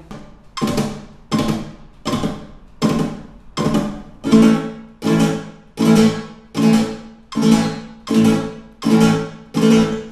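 Nylon-string flamenco guitar playing the abanico (flamenco triplet) in short bursts: one quick three-stroke strum per metronome beat at 80 BPM, about thirteen bursts, with a clear break after each as the chord dies away.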